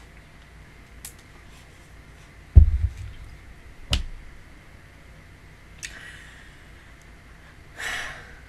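Close-up thumps and breath noise on a desk microphone: a heavy low bump about two and a half seconds in, a sharper knock just before four seconds, then a faint click and a short sharp breath near the end, over a low steady hum.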